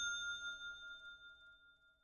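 Metallic ding sound effect of an animated logo intro ringing out: a few steady bell-like tones that fade away over about a second and a half.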